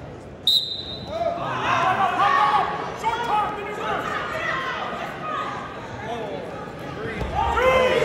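A short, sharp referee's whistle blast about half a second in, followed by spectators and coaches shouting over one another, the yelling growing louder near the end.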